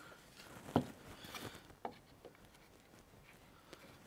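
Quiet handling: a few light clicks and taps, the clearest under a second in, as glue is squeezed into the tenon holes and the wooden pieces are fitted together.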